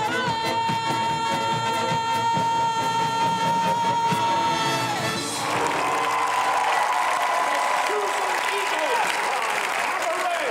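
A woman singer belts a long, held high final note over a band, which cuts off about five seconds in. A large outdoor crowd then cheers and applauds as the band's last chord rings on.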